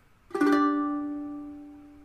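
A G5 chord is strummed once on a ukulele about a third of a second in. The chord then rings on and slowly dies away.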